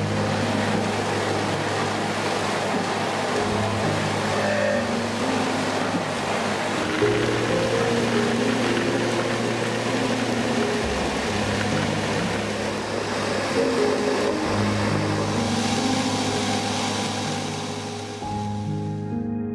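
Electric soybean grinder running steadily, grinding soaked soybeans fed in with water, under soft background music with a slow bass line.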